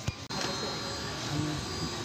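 A short knock near the start, then a steady rushing hum of street background noise.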